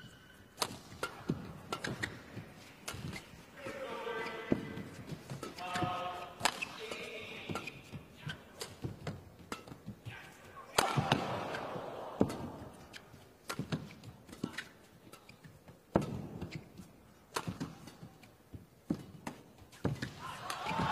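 Badminton rally: rackets striking a shuttlecock back and forth, sharp short smacks a second or two apart, some louder than others. There are a few brief pitched squeaks about four to seven seconds in.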